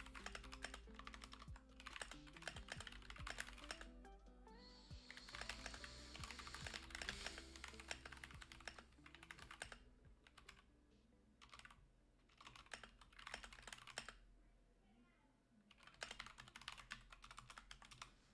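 Faint computer keyboard typing in bursts of quick keystrokes with short pauses between them, over quiet background music.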